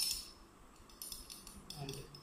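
Glass stirring rod clinking against the inside of a glass test tube, a few light, quick clinks, as copper sulphate crystals are stirred into water to dissolve them.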